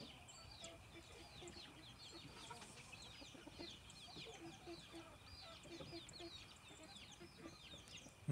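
Faint, soft clucking from chickens in short runs, over continuous high chirping and a thin steady high tone.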